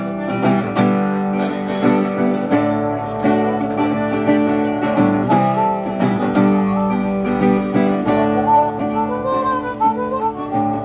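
A hollow-body guitar strummed in a steady rhythm, with a harmonica playing along in held notes that bend in pitch, most clearly about halfway through and near the end.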